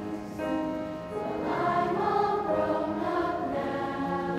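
Sixth-grade children's choir singing a Christmas song, dipping briefly about a second in, then swelling fuller and louder.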